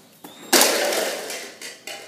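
A pyramid of red plastic Solo cups knocked down by a rolling can of peas: a sudden plastic clatter about half a second in as the cups tumble onto carpet, dying away over about a second.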